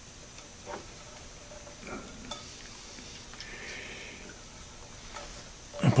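Faint handling noise: a few light clicks and taps of small metal parts and a soft scuffing rustle in the middle, as hands work at a small motor and pulley to fit a drive belt.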